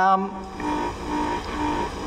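A woman's drawn-out hesitation 'um' over a microphone and PA, then a pause in which a faint steady tone pulses on and off about twice a second.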